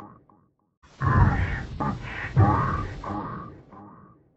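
A man's voice, unintelligible and processed, coming in about a second in and trailing off toward the end.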